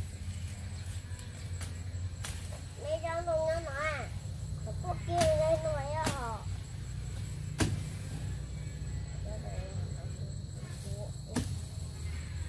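A high-pitched child's voice calls out twice in wavering drawn-out sounds, about three and five seconds in. A steady low rumble runs underneath, and a few sharp clicks are scattered through.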